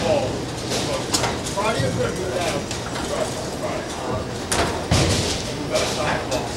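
Bowling alley din: background voices over a low rumble of balls rolling, with sharp clatters of impacts about a second in and again twice near the end, typical of balls striking pins on nearby lanes.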